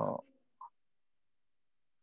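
A man's drawn-out hesitant "uh" over a video call, trailing off in a creak within the first quarter second. A short faint blip follows, then silence.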